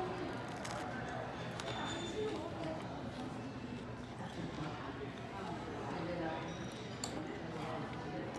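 Murmur of diners' voices in a restaurant, with a man chewing a bite of toasted bread topped with blue cheese.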